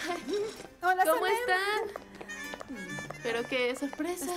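Voices calling out over background music, with a loud, rising stretch about a second in.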